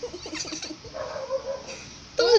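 Infant babbling: several short vocal sounds that slide up and down in pitch, then one longer, steadier held note about a second in.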